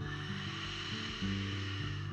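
Ujjayi ("ocean breath") exhale: one long, steady breathy hiss through a narrowed throat, fading out near the end. Soft background music with held low notes plays underneath.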